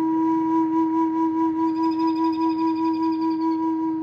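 Native American flute holding one long, steady low note, with a pulsing vibrato of about five beats a second that sets in about half a second in and eases off near the end.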